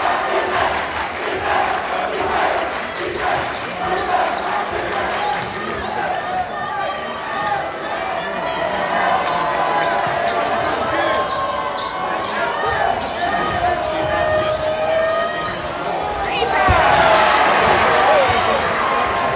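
A basketball being dribbled on a hardwood gym floor amid a crowd's shouting and chatter, which grows louder near the end.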